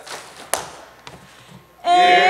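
A pause in a men's sung comedy number: a single sharp tap about half a second in and a fainter tap after a second over low stage and audience noise, then the two men's voices singing come back in just before the end.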